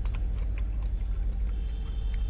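A gray langur chewing a hard jujube (ber) fruit, with faint irregular crunching clicks over a steady low rumble.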